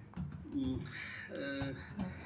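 A man's voice making two short, low, level hums, each under half a second, as hesitation sounds while he searches for words.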